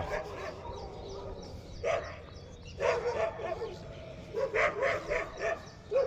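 Dog barking: single barks about two and three seconds in, then a quick series of barks near the end.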